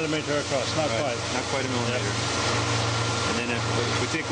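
Seawater rushing through a fine-mesh tuna-egg collecting net, a steady hiss, over a constant low machine hum. Faint voices are heard in the first second.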